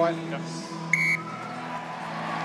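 A single short, high electronic beep about a second in, over a steady low background hum.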